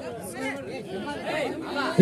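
Low background chatter: several people talking over one another at once.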